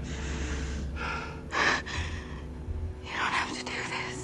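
A woman gasping and breathing hard in several short, breathy bursts while held by the throat. The sharpest gasp comes about a second and a half in. A low steady hum runs underneath.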